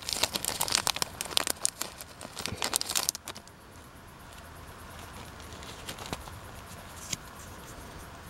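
Tea-bag sachet crinkling as it is handled: a dense run of crackles for about three seconds. After that only a faint hiss remains, with a couple of soft clicks.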